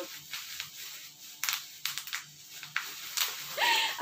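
Bubble wrap being popped by hand: about eight sharp, irregular pops with the crinkle of the plastic sheet between them.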